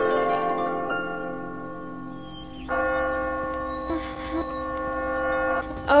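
Clock chime bells ringing: one chime fades away over the first two seconds, then another is struck about two and a half seconds in and rings on.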